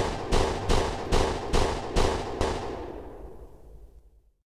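A rapid string of about eight gunshot sound effects, two to three a second, each with an echoing tail, the sound dying away near the end.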